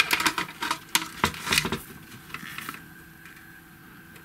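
Small plastic pulleys and gears clicking against each other and the silicone mat as they are picked through by hand, a quick run of light clicks that thins out about two seconds in.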